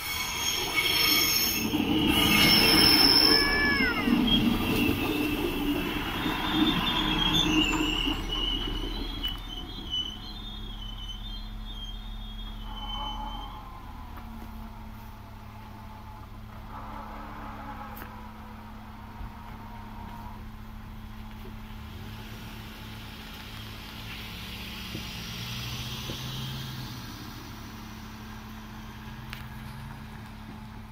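A train running through the level crossing with its wheels squealing on the rails. It is loudest in the first several seconds and fades after about ten seconds. Near the end a car drives across.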